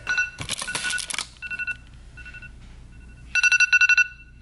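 An iPhone alarm going off: an electronic two-tone chime sounding in short repeated pulses, breaking into a quick run of beeps near the end. There is a brief rustle of handling about half a second in.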